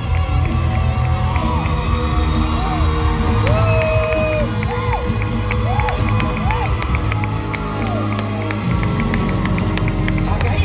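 A live band with horns playing, while the audience cheers and lets out short whoops over the music.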